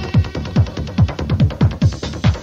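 Electronic dance music from a 1994 club DJ set: a steady kick drum about two beats a second under busy, fast hi-hats.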